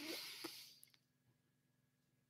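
Near silence: room tone, with a faint short sound and a small click in the first half second.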